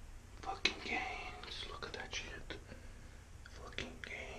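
A man talking quietly in a whisper.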